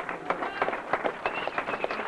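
Audience applauding: many quick, irregular hand claps, with a high held note from someone in the crowd a little past midway.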